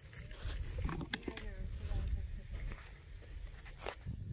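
Wind rumbling on the microphone, with quiet talk and two sharp clicks, one about a second in and one near the end; no gunshot.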